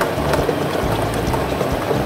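Plastic lottery balls tumbling and clattering inside the spinning clear drum of a lottery draw machine, a continuous rattle of many small knocks.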